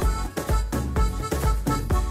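Instrumental break of a Romanian manele song: a steady dance beat under a melodic line, with no singing.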